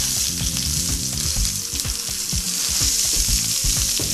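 Pork sizzling steadily in oil in a hot frying pan as the meat is pressed down against the pan to squeeze out its juices.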